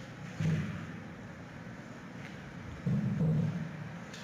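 Two low, dull bumps from a giant panda cub and its mother scrambling about on the floor and over a round flat disc, one about half a second in and a longer one about three seconds in, over a steady low hum.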